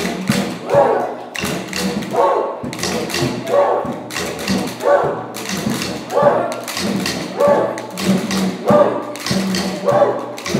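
A group of homemade pipe didgeridoos droning together in a low buzzing tone, over a regular drum beat that repeats at an even pulse through the whole passage.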